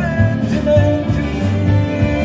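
Live jazz quartet and orchestra playing an instrumental passage: a sustained melody line over a steady pulsing bass, with piano, guitar, double bass and drums.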